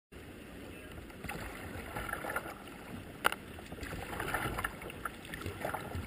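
Water lapping and splashing against a kayak's plastic hull as it is paddled along a river, with small irregular splashes and one sharp tap about three seconds in.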